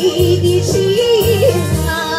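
Electronic keyboard music: a melody with a wide vibrato, one long held note and then a short moving phrase, over a steady rhythmic bass and beat accompaniment.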